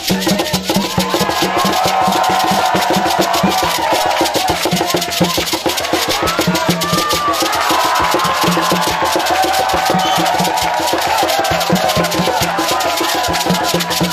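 Traditional Togolese hand drumming on a tall wooden barrel drum and a painted drum, with shaken rattles, in a quick, steady rhythm, under a women's chorus singing a traditional song.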